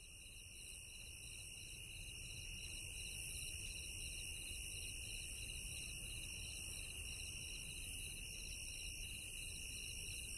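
A chorus of crickets and other insects trilling at several high pitches, one of them pulsing rapidly and another in broken bursts, over a low background rumble. The recording fades in over the first few seconds and then holds steady.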